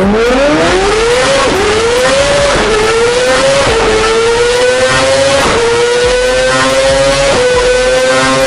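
Kawasaki Ninja ZX-25R's 250cc inline-four engine revving hard on a chassis dynamometer, its pitch climbing and then dipping briefly at each upshift. There are five quick shifts, each gear pulling longer than the last.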